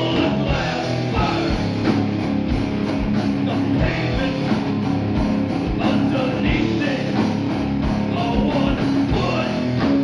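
A live heavy metal band playing: distorted electric guitars over a drum kit with a steady, driving kick drum.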